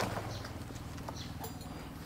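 A few faint knocks from potted bougainvillea plants being handled and set on a stand, over a steady low background hum.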